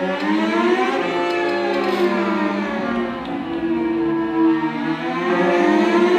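Live chamber music for B♭ clarinet, cello and prepared piano: held notes slide slowly up in pitch over the first second, fall until about two and a half seconds in, and rise again near the end.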